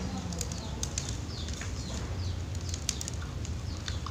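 Young zebra dove (perkutut) chick feeding from a hand-held feeding cloth: several short, high, squeaky peeps that fall in pitch, with light clicks of its pecking.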